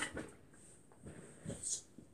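A few faint, short rustles and knocks of a person shifting and moving about on a carpeted floor.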